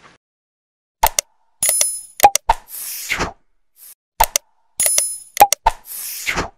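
Subscribe-button animation sound effects after about a second of silence: sharp clicks, bell-like dings and a falling whoosh, the set repeating about every four seconds.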